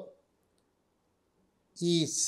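A man speaking Telugu trails off at the start, pauses, and starts speaking again near the end. The pause holds only a couple of faint, short clicks about half a second in.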